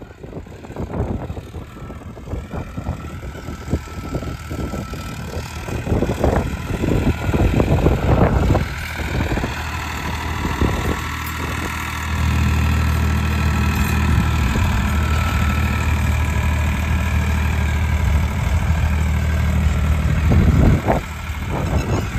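Farmtrac 60 Valuemaxx tractor's diesel engine running under load while pulling an 18-disc harrow. The first half is an irregular rustle with many short knocks; about twelve seconds in, a steady low engine drone comes in louder and holds until near the end.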